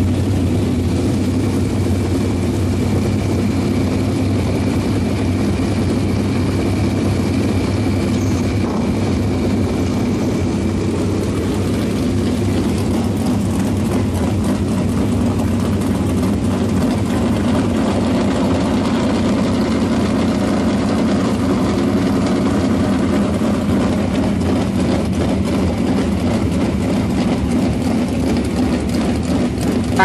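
360 sprint car V8 engines running at a steady, unchanging pitch, a continuous low drone with no revving.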